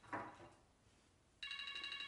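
A phone ringing with a steady electronic ringtone: a brief sound comes just after the start, then a gap, and the ring starts again about one and a half seconds in.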